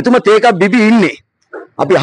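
A man talking into a handheld microphone, in two phrases with a short pause between them.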